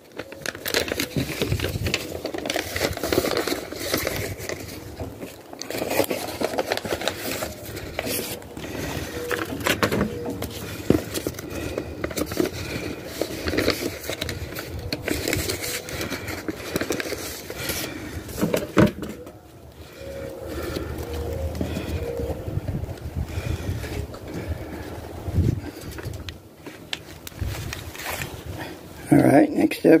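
Indistinct voices mixed with irregular clicks and knocks from handling close to the microphone.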